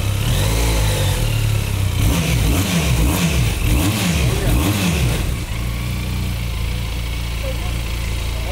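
Benelli 502 TRK's parallel-twin engine idling, revved several times in quick succession about two seconds in, then settling back to a steady idle.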